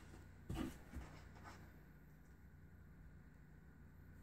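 Mostly near silence, with two faint, short rustles or taps about half a second and a second in as a ribbon korker bow is handled and set down on a cutting mat.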